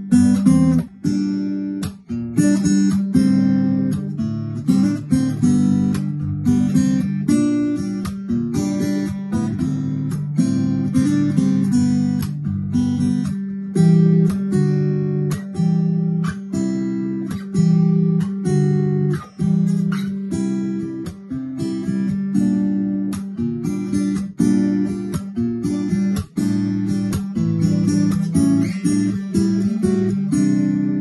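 Turner RB20 round-back acoustic guitar, with lacewood back and sides, amplified through its onboard pickup: a steady run of picked and strummed chords, many notes a second, ringing on.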